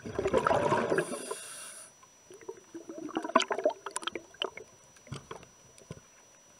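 Underwater recording of a scuba diver's exhaled breath: a gurgling rush of bubbles from the regulator in the first two seconds, followed by scattered crackling and clicking as the bubbles rise and break up.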